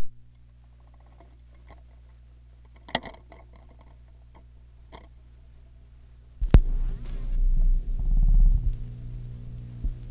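Console stereo's automatic record changer cycling over a steady amplifier hum: a few faint mechanical clicks as the tonearm swings out, then a sharp click about six and a half seconds in as the stylus drops onto the 45 rpm single, followed by the rumble and crackle of the lead-in groove.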